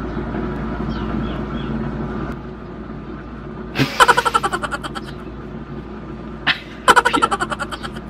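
A motor vehicle engine running steadily, with two short bursts of rapid pulsing about four and seven seconds in.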